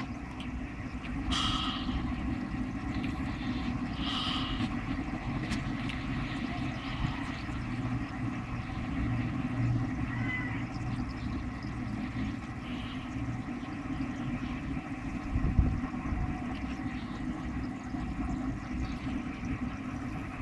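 Steady hum of an aeration air pump with air bubbling from its tube into a basin of water holding live fish, plus a couple of short splashes or knocks early on and a dull thump about three-quarters of the way through.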